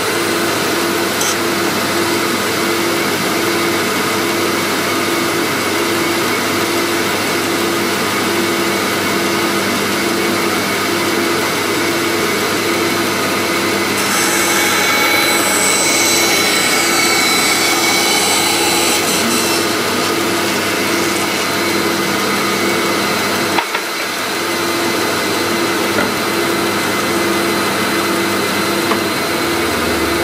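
Band saw running steadily with a regular pulsing hum while its blade cuts through a plywood board. The cutting gets louder and harsher for a few seconds in the middle, and there is a single knock about two-thirds of the way through.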